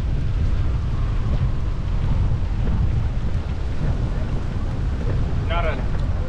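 Wind buffeting the microphone, a steady low rumble, at a windy riverside with choppy water; a voice is heard briefly near the end.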